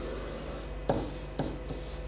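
Marker pen drawing a curve and writing letters on a whiteboard: the felt tip rubbing on the board, with two sharp ticks about a second in and half a second later.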